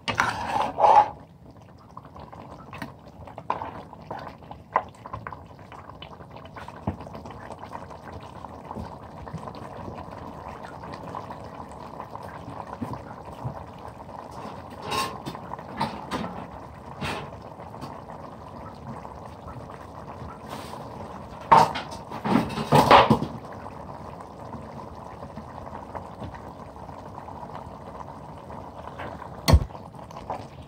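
Thick mutton karahi gravy bubbling and sizzling in a steel pan, a steady crackle, with a metal ladle clinking and scraping against the pan now and then, most loudly a little after twenty seconds in.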